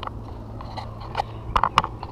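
A few sharp clicks and light knocks of small hardware being handled, most of them close together about a second and a half in, over a steady low hum.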